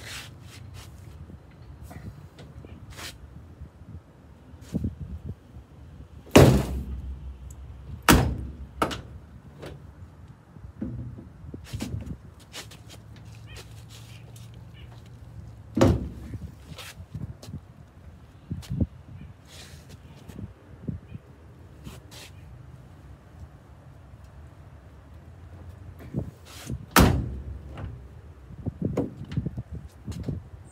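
Steel cab door of a 1948 Ford F1 pickup being swung shut against its frame: four loud, irregularly spaced thunks, with lighter knocks and latch clicks between. The door is being test-closed while its hinges are adjusted, because it sits out of line with the cab.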